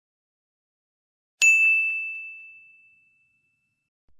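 Silence, then about a second and a half in a single high, bright bell-like ding that rings out and fades away over about a second and a half.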